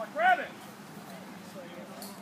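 One loud shout about a quarter second in, with faint voices in the background.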